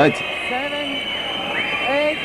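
A boxing referee counting aloud over a knocked-down fighter: two short calls about a second apart, over a steady background of crowd noise.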